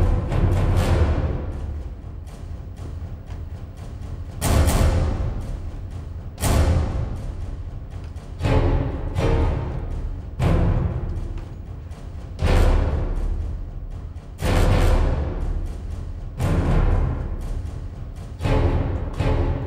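Background film music with a heavy, deep drum hit about every two seconds, each one dying away before the next.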